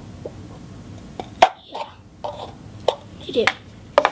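Paper cup being punctured and handled: a few sharp clicks and taps as a hole is poked through the bottom of the cup, the loudest about a second and a half in, and a tap near the end as the cup is set down on a wooden table.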